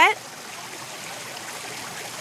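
Fountain water running and trickling steadily, an even rushing hiss.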